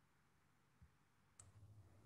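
Near silence of room tone, broken by a soft low thump a little under a second in and a single sharp click about a second and a half in, after which a low hum sets in.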